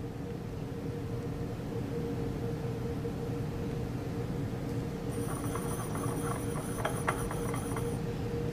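Steady low room hum; from about halfway through, faint scattered light taps and clicks as the glass Erlenmeyer flask is gripped and swirled.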